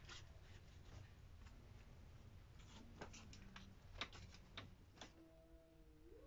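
Near silence, with faint scattered clicks and taps as gloved hands press fiberglass insulation batts between wooden ceiling rafters.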